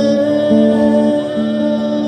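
Live rock band music played through a PA system: guitar over a repeating pattern of held notes that change about every half second.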